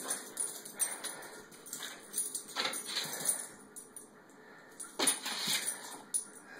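A small dog's claws clicking and scrabbling on a tile floor in irregular quick bursts as it spins and lunges, loudest near the middle and again about five seconds in.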